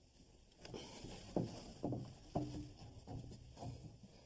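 Mini tubing cutter being turned around a copper water pipe: a series of faint, irregular clicks and scrapes, roughly two a second.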